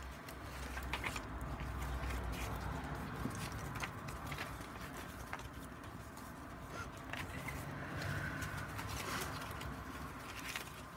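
Paper pages and card inserts of a ring-bound junk journal being turned and handled: soft rustling with a few faint light taps, fairly quiet.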